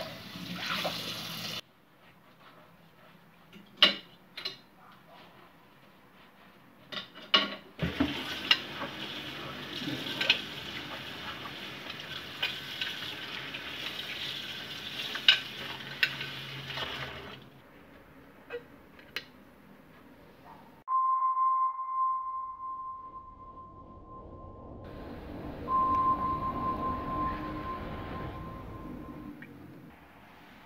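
Kitchen tap running into a stainless steel sink while dishes and cutlery are washed, with scattered clinks of crockery and metal; the water stops about two-thirds of the way through. After that a steady high-pitched tone sounds, breaks off, and comes back for a few seconds.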